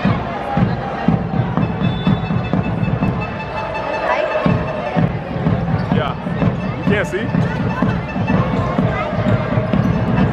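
Live basketball game sound in an indoor arena: the ball bouncing on the court amid crowd voices and music playing over the arena's sound system.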